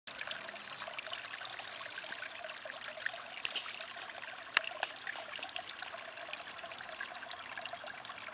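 Garden pond water feature trickling and splashing steadily: water spilling from a birdbath-style fountain bowl and over a small rock cascade into preformed pond basins. One sharp click about halfway through.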